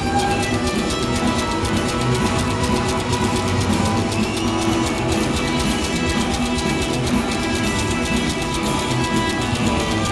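Rockabilly band playing live, electric guitar to the fore over a steady beat, with no singing.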